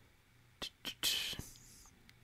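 A person's mouth sounds between sentences: two soft clicks, then about a second of breathy, whispered sound with no voiced words.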